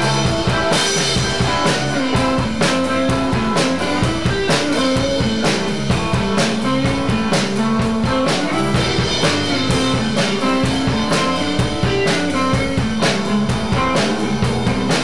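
Live rock band playing an instrumental passage with no vocals: electric guitars, an electric bass line and a drum kit keeping a steady beat, with a strong drum hit about once a second.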